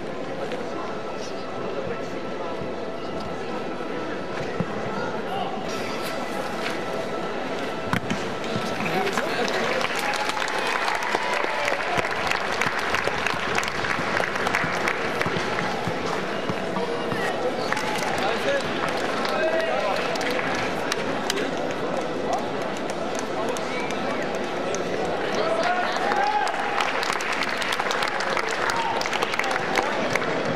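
Unclear voices and background music across an open football ground, with scattered sharp thuds of footballs being kicked in a pre-match warm-up.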